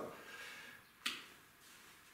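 A single sharp click about a second in, with a short echo, in an otherwise quiet room.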